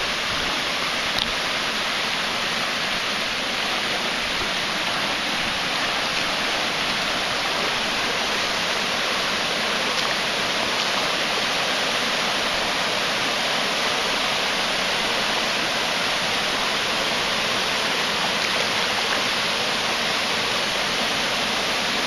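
Shallow river water rushing over a stony riffle: a steady, even rush with no breaks.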